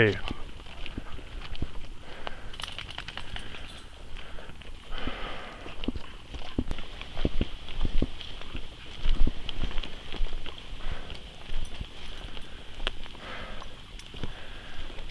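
Footsteps and rustling of a person walking a dirt forest trail, with irregular scuffs and knocks, under a steady high-pitched hum.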